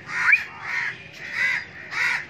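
Crows cawing, about three harsh caws in two seconds, with a short rising squeak about a third of a second in.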